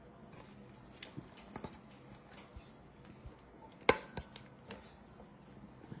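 Quiet handling and scraping as a silicone spatula works thick dip out of a KitchenAid blender jar, with scattered small clicks and two sharp knocks close together about four seconds in.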